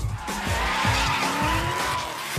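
Drift car sliding with its tyres screeching and its engine held at high revs, the engine pitch creeping up in the second half. A music track with a beat runs underneath.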